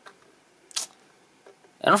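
Quiet room with two brief clicks of a computer mouse: a faint one at the start and a sharper one just under a second in. A man's voice starts near the end.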